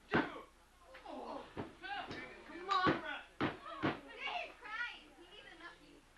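Several sharp slaps or thuds on a wrestling ring's mat during a pinfall, mixed with children's voices calling out from ringside.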